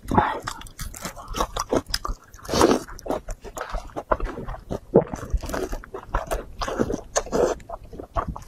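Close-miked wet chewing and lip-smacking as a piece of saucy red-braised meat is bitten and chewed, with irregular sticky clicks and smacks and a few louder surges of chewing.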